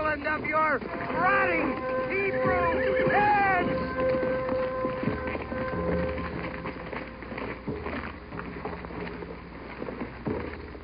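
Several voices shouting and whooping in rising-and-falling calls over a long, steady horn note, such as a ram's horn blown as the city is circled; after about six seconds the horn stops and it settles into a quieter background.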